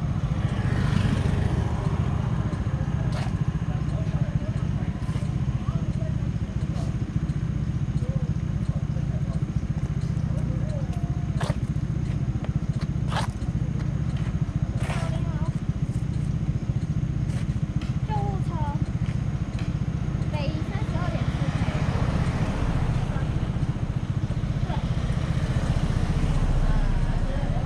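Indistinct voices of people talking over a steady low rumble, with a few sharp clicks in the middle. A car comes past near the end.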